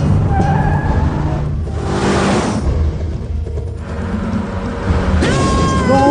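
Cartoon soundtrack with tense background music over a car engine rumble. A rushing noise comes about two seconds in, and near the end a long, steady high tone starts.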